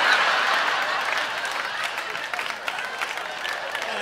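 Live audience applauding, loudest at the start and slowly dying down.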